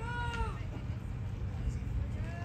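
A single drawn-out, high-pitched shouted call from a person, lasting about half a second at the start, heard over a steady low rumble.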